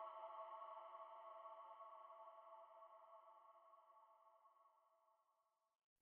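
Near silence: a faint sustained droning chord of background music, several steady tones held together, fades away over about the first three seconds.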